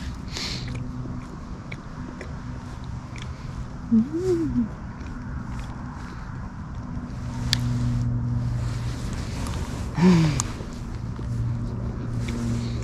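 Chewing on a freshly baked scone with a crispy bottom, with small crunchy clicks. Two short hummed sounds come about four and ten seconds in. A steady low engine drone runs behind, swelling midway.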